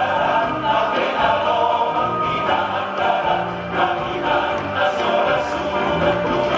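Large men's choir singing in harmony, holding sustained chords that shift from one to the next.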